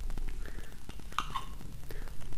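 Metal spoon scraping and clicking against a glass jar while scooping out thick hazelnut butter, with a short high squeak a little over a second in.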